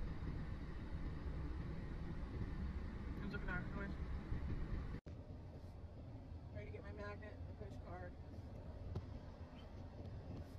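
Low road and engine rumble inside a car's cabin while it drives, cutting off abruptly about halfway to a quieter low hum as the car sits at an intersection. Brief, indistinct voices come in twice.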